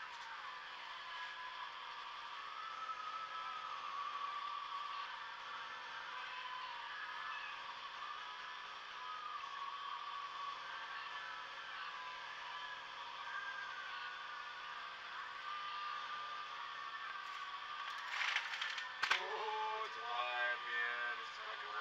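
Steady background noise of a vehicle repair workshop, with a short clatter of knocks near the end.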